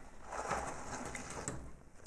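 A gold-foil-covered cardboard cookie tray being lifted and handled, its foil surface rustling and crinkling, fading out near the end.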